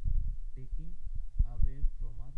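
A person speaking, with low thumps on the microphone, strongest near the start and again a little after the middle.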